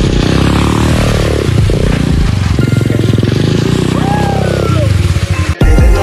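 A 125cc dirt bike's engine revving, its pitch rising and falling as the rider works the throttle through the puddles, mixed with a music track with vocals. Near the end the engine cuts out and only the music carries on.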